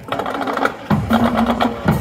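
Marching band drumline playing a fast cadence: rapid, crisp snare-type strokes start suddenly, and heavier bass drum hits join about a second in.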